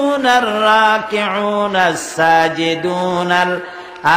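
A man reciting a Quranic verse in Arabic in a slow, melodic chant, holding long drawn-out notes that glide and waver in pitch.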